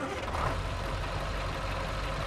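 Steady low engine rumble of a vehicle idling, with a light hiss over it.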